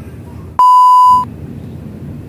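A single loud electronic beep: one steady high tone lasting about half a second, switching on sharply about half a second in and cutting off suddenly.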